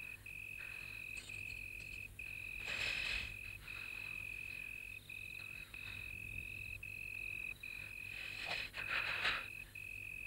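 Crickets chirping in a steady high trill that breaks off briefly now and then, with two soft rushes of noise, about three seconds in and near the end.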